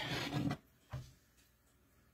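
A single light knock about a second in from the glass half-gallon mason jar being handled and lifted. After that there is only quiet room tone.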